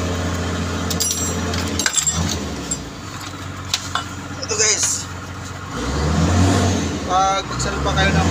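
A nearby engine running with a steady low hum that fades out about three seconds in and comes back near six seconds, with metal clinks as a steel clutch pressure plate is picked up and handled.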